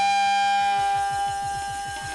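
A single long, steady horn-like note held without wavering and slowly fading, over a fast, regular low drum beat in the stage music.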